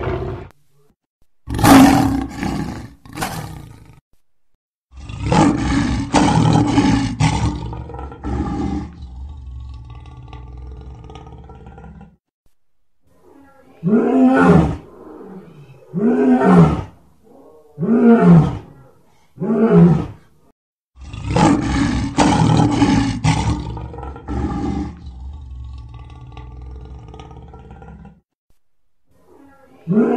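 Lion roaring: two short roars near the start, then a long, full roar that fades away. In the middle come four short grunting roars about two seconds apart, and then another long roar.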